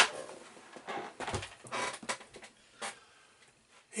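Craft materials being handled and set down on a work surface: a sharp knock at the start, a few short bursts of rustling, and a single tap about three seconds in.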